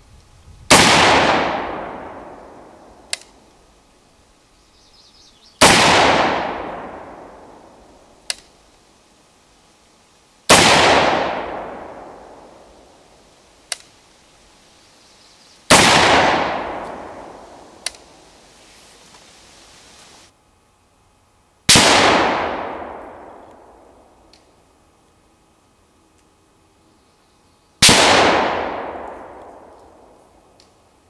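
Vepr rifle in 7.62x54R fired six times, roughly five to six seconds apart, each shot followed by a long fading echo. A short sharp click follows a couple of seconds after most of the shots.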